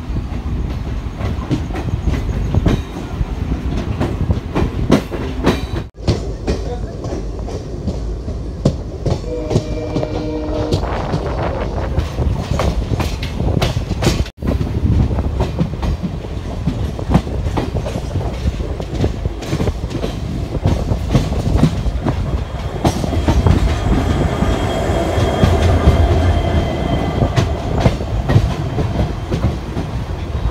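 A passenger train's coach wheels clattering over rail joints and points as it runs into a station, over a steady low rumble, heard from the side of a moving coach.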